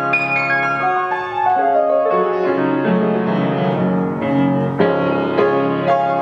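Carlmann baby grand piano being played: a slow passage of chords and melody notes, a new chord struck every second or so and each left to ring.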